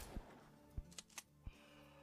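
Near silence, broken by a few faint, short clicks spread across two seconds.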